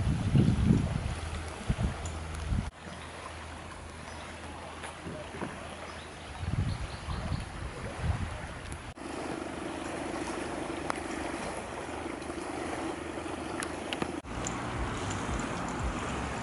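Wind noise on the camera microphone over outdoor ambience, broken by three abrupt cuts; a steady low hum sounds for about five seconds in the later part.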